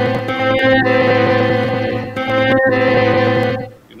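A chopped music sample played back as a loop, made of sustained chords whose notes shift a couple of times. It is cut so the chord change lands on the second beat. It stops suddenly shortly before the end.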